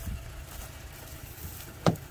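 Low wind rumble on the microphone, then one sharp click near the end as a hand takes hold of a Toyota Tacoma pickup's rear door handle.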